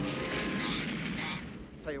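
A rough, blast-like burst of noise lasting about a second and a half, then fading, in the manner of a comedy crash or explosion sound effect.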